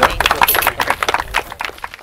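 Small audience applauding, a dense patter of claps that thins out and fades near the end.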